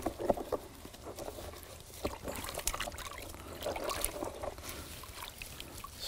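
Water sloshing, splashing and trickling in a plastic tub as hands swish a citrus tree's root ball through it to wash the soil off the roots. The splashes come unevenly, in small bursts.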